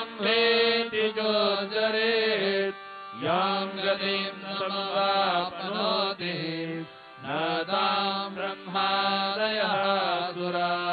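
Devotional mantra chanting at a Hindu aarti: a voice holding long sung notes with gliding pitch over a steady drone. The phrases break briefly about three seconds in and again near seven seconds.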